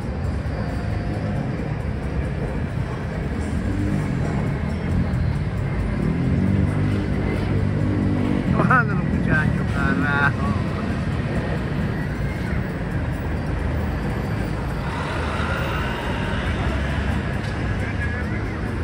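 City street traffic: motor vehicles running and passing, with a steady low rumble and people's voices in the background. A few short high wavering calls stand out about halfway through.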